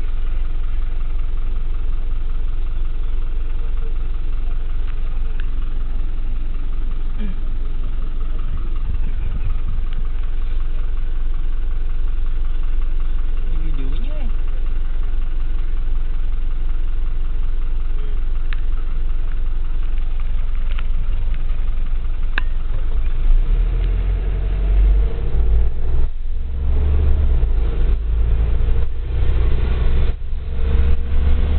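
Vehicle engine idling, heard from inside the cab while stopped in traffic. About 23 seconds in, the engine note grows louder and deeper and goes on unsteadily as the vehicle pulls away.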